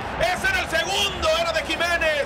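Speech: a male football commentator's voice calling the play, with no other sound standing out.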